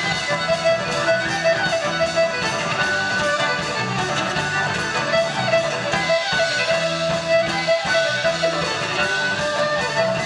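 Celtic rock band playing an instrumental passage without singing: fiddle bowing a melody of quick repeated notes over electric bass and guitar, amplified through the stage PA.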